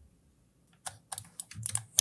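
Computer keyboard keys clicking: a quick run of about six or seven keystrokes starting about a second in.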